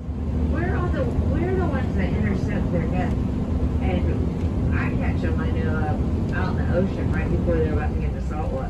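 Steady low rumble of a moving vehicle heard from inside the cabin, with a person talking over it.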